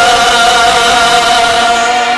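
A male singer holding one long, steady note through a microphone, with musical accompaniment.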